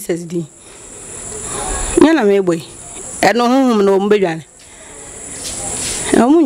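Steady high-pitched chirring of crickets throughout. Over it, a woman's voice comes in three short wavering stretches, the longest near the middle.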